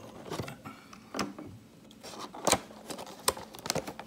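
Hands handling and picking at a cardboard box, making scattered clicks, taps and scraping rustles, the sharpest about two and a half seconds in.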